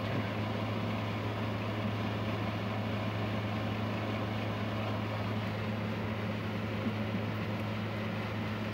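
A steady low machine hum over an even background hiss.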